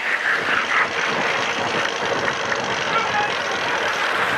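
Steady din of a stadium crowd during a cycling race, with voices in it.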